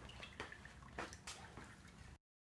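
Faint trickling and dripping of water, with a couple of soft clicks.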